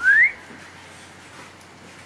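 A short, clean rising whistle right at the start, gliding upward for about a third of a second, then only quiet room tone.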